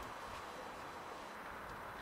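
Faint, steady city street ambience: a low, even hum of traffic with no distinct events.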